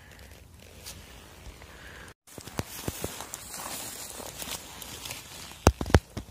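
Rustling and crackling in dry leaves and twigs on the forest floor, with small clicks throughout. The sound cuts out completely for a moment about two seconds in, and two sharp, loud clicks come near the end.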